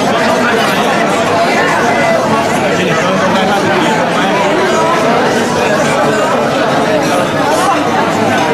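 Crowd of many people talking at once: a steady hubbub of overlapping voices with no single speaker standing out.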